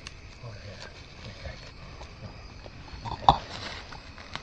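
Dry soybean stalks rustling as the downed deer is handled, under faint low voices. A single sharp knock a little after three seconds in is the loudest sound.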